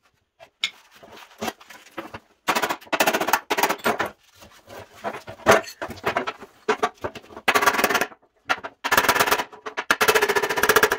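Runs of rapid hammer blows on the dented sheet steel of a 1948 GMC truck running board, each run lasting about a second, with scattered lighter knocks between them as the panel is handled.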